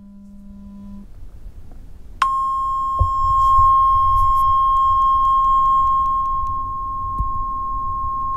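Pure sine tone from a phone's tone-generator app, played into a condenser microphone to show the harmonics the microphone adds. A low steady tone ends about a second in, then a steady high-pitched beep switches on just after two seconds and holds, with faint overtones above it.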